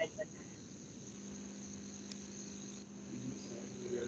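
Faint steady background during a pause in talk: a low hum with a thin high-pitched whine above it.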